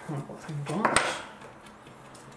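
Small hard game pieces clattering briefly, a short clinking rattle that ends in one sharp click about a second in.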